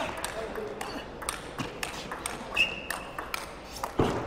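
Table tennis rally: the celluloid ball clicks sharply and irregularly off the bats and the table, with a brief high squeak about two-thirds of the way through.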